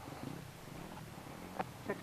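A faint, low, steady hum like an idling engine, with a short click about one and a half seconds in.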